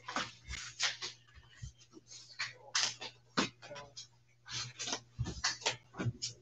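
Trading cards being gathered up, slid across the playmat and shuffled: a run of short, irregular rustles and clicks, over a low steady hum.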